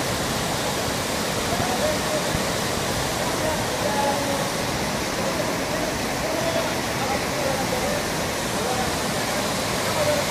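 River water rushing steadily over a low weir of rocks and piled rubbish.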